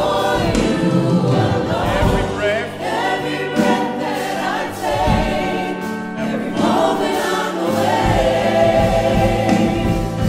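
A gospel praise team of mixed voices singing a worship song together in harmony, over sustained low accompanying notes.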